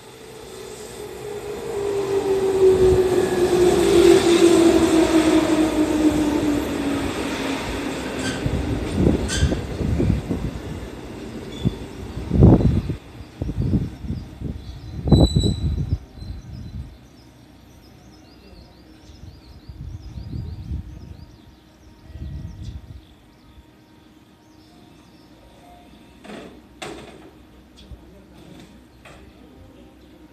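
JR Central 311 series electric train pulling into the station and braking to a stop. Its motor whine falls steadily in pitch as it slows, over a rising and falling rumble of wheels on rail. A run of knocks follows, with two loud clunks about halfway through as it halts. The rest is quieter, with a few faint knocks.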